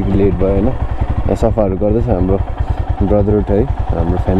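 Motorcycle engine running at low speed with a steady low pulse, heard from the rider's seat, with a man's voice talking loudly over it.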